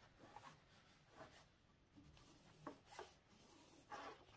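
Near silence, with faint scattered rustles and rubs of fabric being smoothed flat by hand.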